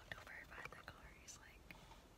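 Near silence with a faint whispered voice and a few small clicks.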